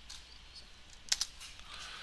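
A few quiet keystrokes on a computer keyboard, typing in a ticker symbol, with a couple of sharper key clicks about a second in.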